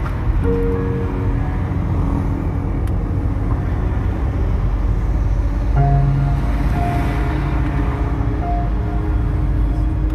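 Steady low rumble of a car driving along a city street, recorded from the moving vehicle, with music playing over it: held notes that change pitch every second or so.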